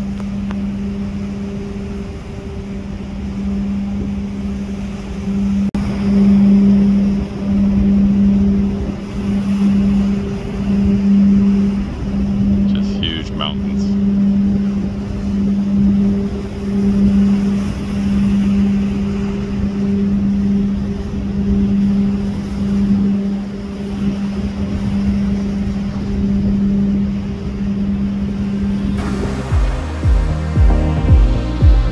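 Steady low hum of a cargo ship's machinery, swelling and fading about once a second, over a low rumble of wind on the microphone. A brief high chirp comes about halfway through.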